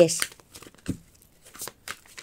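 A deck of oracle cards being handled and fanned out between the hands: a few short, soft flicks and slides of card stock.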